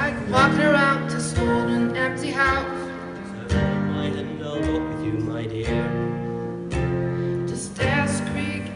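A small live acoustic band playing a song: acoustic guitars and piano, with a female singer's held, wavering melody notes over them.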